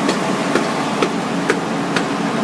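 Gold processing machinery at a Knelson-type centrifugal concentrator running with a steady hum, and a sharp knock repeating about twice a second.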